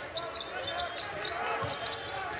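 Basketball court sounds: a ball dribbling on a hardwood floor, sneakers squeaking, and faint voices of players calling out on the court.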